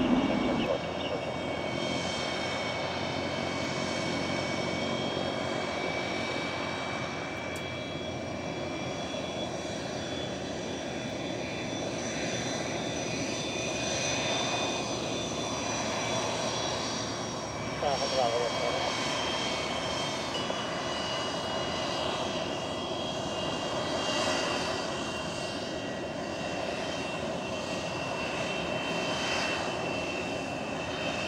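Fixed-wing aircraft engines running steadily, a continuous rushing noise with several steady high whining tones on top.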